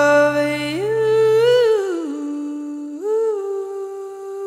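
A woman's voice humming slow, long held notes without words, sliding smoothly up and down between pitches. A sustained low backing drops out partway through, leaving the hummed line alone.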